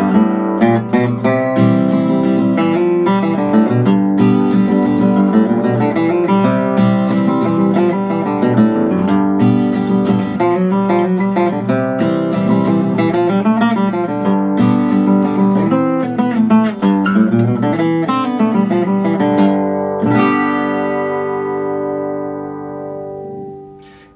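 Steel-string acoustic guitar played solo: a country-style passage of chords and single-note runs over a G–C chord progression, built around the F note on the fourth string, third fret. About 20 seconds in, the last chord rings out and fades away.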